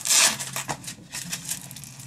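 The hook-and-loop (Velcro) strap of a maternity support belt ripped open with a short, loud rasp right at the start, then faint rustling and small clicks as the belt is adjusted and pressed into place.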